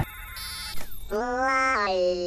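A buzzy electronic robot-like voice: it holds one pitch, steps down to a lower note and then slides down. Faint high electronic chirps come just before it.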